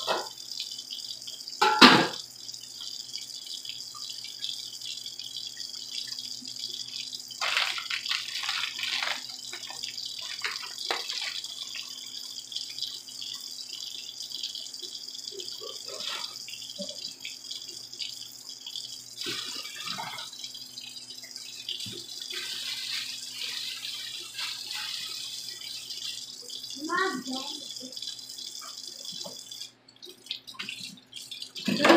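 Kitchen range hood fan running with a steady hiss and low hum over a stockpot of seafood boil left to soak. About two seconds in there is one sharp metal clank as the stainless lid goes on the pot, followed by scattered faint knocks and distant voices.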